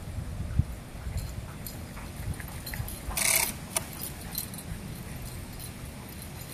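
A dog's collar tags jingling and clicking lightly as it trots back across the grass, with a short rustling burst about three seconds in, over a low steady rumble.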